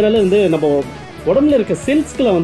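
A voice over background music with guitar; the voice dips briefly about a second in.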